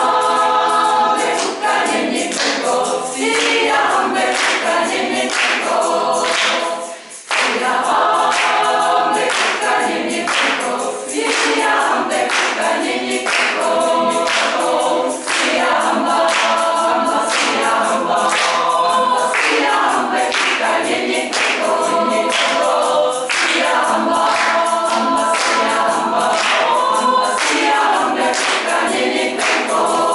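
Small women's choir singing a cappella, with a brief pause about seven seconds in.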